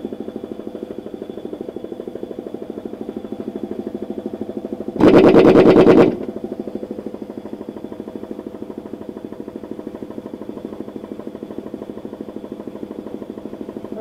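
Piston air compressor running steadily with a fast pulse. About five seconds in, a pneumatic impact wrench hammers on the tractor wheel's hub nuts in one loud burst of about a second.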